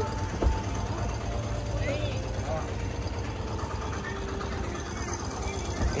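Steady low rumble of traffic on the adjacent highway, with faint voices in the background and a single light click about half a second in.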